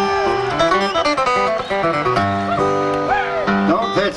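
Acoustic flat-top guitars picked in short runs and held notes: sound-check picking to hear whether the guitars are coming through the PA before the song starts.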